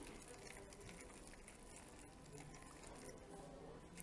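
Faint trickle of hot water poured from a glass kettle onto dry peat seed-starting tablets in a plastic tray.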